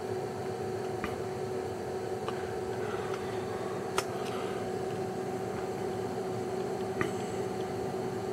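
Steady fan-like hum of bench test equipment, with four light clicks of an oscilloscope's front-panel buttons being pressed, the sharpest about four seconds in.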